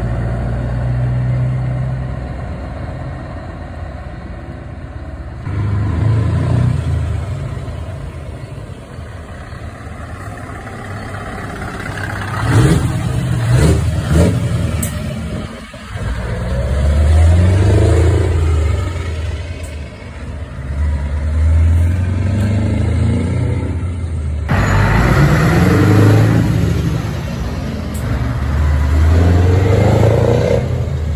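Heavy semi-truck diesel engines pulling away and passing close by one after another, each rising and falling in a low swell of engine noise. Several sharp, loud bursts about 13 to 15 seconds in.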